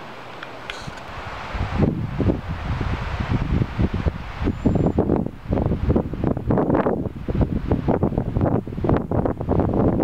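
Wind buffeting the microphone in loud, irregular gusts, starting about two seconds in after a quieter steady hiss.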